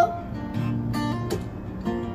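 Acoustic guitar strummed, a few strokes with the chord ringing on between them.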